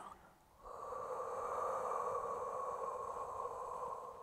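A woman's long, steady breath out, starting about half a second in and lasting over three seconds before fading near the end. It is the exhale of Pilates lateral rib breathing, drawing the ribs back together.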